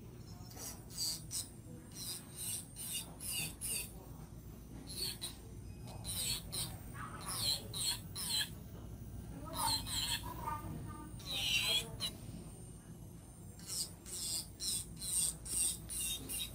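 Electric nail drill bit grinding acrylic around the cuticle area in short, irregular scraping passes, over a faint steady hum.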